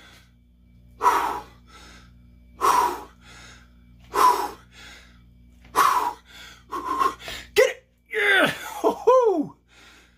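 A man's forceful exhalations, one about every second and a half with each rep of a weight-plate reverse curl, then two strained, falling groans of effort near the end.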